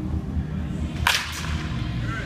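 Baseball bat striking a pitched ball in batting practice: a sharp crack about a second in, followed by a second crack about a third of a second later.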